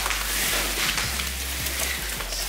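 Crackly rustling of fir branches and needles as a cut Christmas tree is handled, over background music with a steady bass line.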